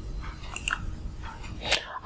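Quiet room noise with a low steady hum and a few faint clicks, the loudest near the end just before speech resumes.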